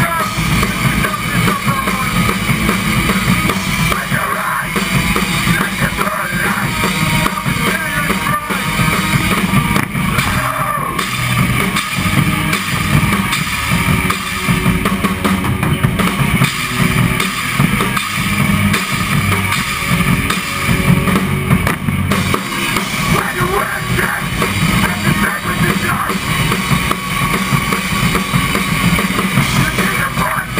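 Melodic hardcore band playing live: a drum kit with driving bass drum, electric guitars and bass, in an instrumental stretch without vocals.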